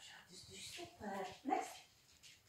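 A small dog giving a few short barks, the sharpest near the end, mixed with a woman's voice.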